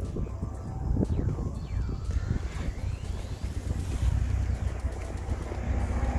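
Wind buffeting the microphone with a steady low rumble, and faintly behind it a whine that falls in pitch, then another that rises.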